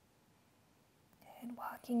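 Near silence (room tone) for about a second, then a woman starts speaking softly and breathily near the end.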